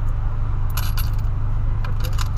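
Loose coins jingling and clinking as change is dug out by hand, in a couple of short clusters about a second in. Underneath is the steady low hum of the 2008 VW Polo Sedan's engine idling.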